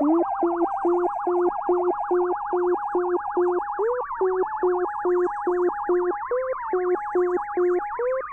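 Synthesizer electronica: a repeating pattern of short, clipped notes, about three a second, under a fast warbling high tone.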